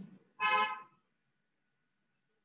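A single short horn-like toot, about half a second long, starting about half a second in.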